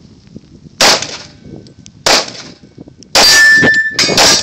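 Handgun shots fired close by during a practical-pistol stage, each a sharp crack with a short ring after it. One comes about a second in and another at about two seconds. From about three seconds in there is a longer, louder stretch of shots with a steady ringing tone in it.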